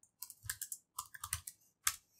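Computer keyboard being typed on: about a dozen light key clicks at an uneven pace, with one sharper stroke near the end.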